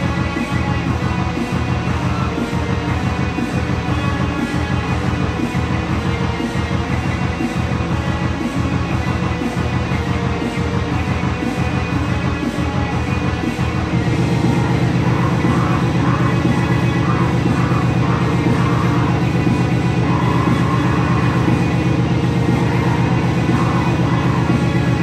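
Black metal band rehearsal, heavy guitar-driven music. A steady pulsing beat runs through the first half, then about halfway through it changes to a denser, louder wall of sound.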